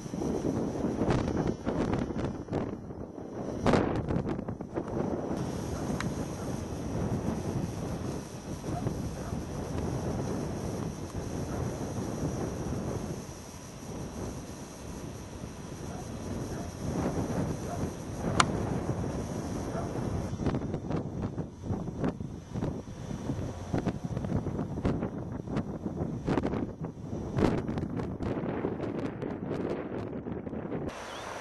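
Wind buffeting the microphone in uneven gusts, with a few sharp clicks.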